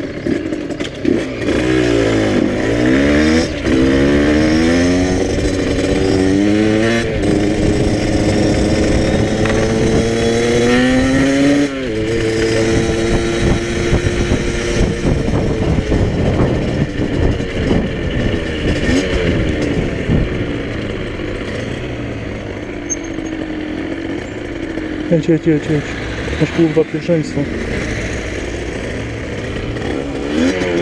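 Small single-cylinder motorcycle engine accelerating through the gears: its pitch climbs and drops back at each upshift, about three times in the first twelve seconds. It then runs more evenly at cruising speed with a few short throttle blips near the end, over wind rush.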